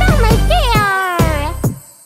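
Children's cartoon music with a steady bass beat, over which a high cartoon character's voice gives one long, falling, meow-like cry starting about half a second in and trailing off.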